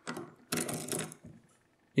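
Key being pulled out of a Miwa DS wafer lock cylinder: a quick rattle of small metallic clicks as the spring-loaded wafers ride over the key's cuts, ending about a second and a half in.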